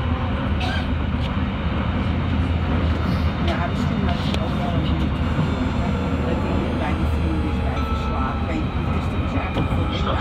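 Metro train heard from inside the carriage, running steadily over the rails with a constant low rumble. A faint high whine sounds in the middle.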